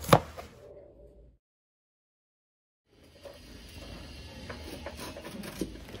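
A knife cutting kernels off a fresh corn cob: a short, crisp cut near the start that fades out within about a second. After a silent gap, only faint low room noise remains.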